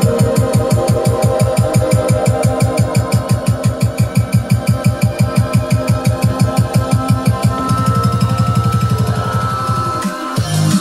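Electronic dance track played on a Pioneer XDJ-RR all-in-one DJ system with a beat effect switched on: the bass is chopped into fast, even repeats, about six a second. About three-quarters of the way in the repeats give way to a steadier bass as the effect is changed.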